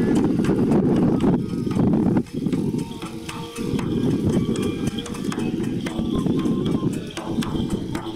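Kagura dance accompaniment: a taiko drum beaten in a fast, dense rhythm, with a brief break a little past two seconds in, and a flute heard faintly over it in the second half.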